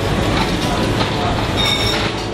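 Loud, steady rumble of a passing vehicle, with a brief high squeal near the end.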